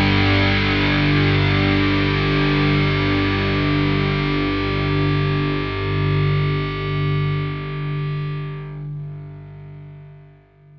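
Alternative/nu metal band music ending: distorted electric guitar chords ringing out over held low notes that change a few times, the sound fading steadily and its high end dying away near the end.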